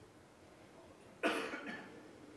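A person coughs once, a short sudden cough about a second and a quarter in.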